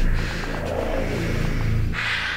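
A low, rumbling drone from the film's score or sound design, steady with slow swells.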